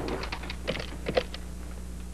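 Keys on a corded push-button telephone handset being pressed to dial: a quick run of about eight light clicks, ending about a second and a half in.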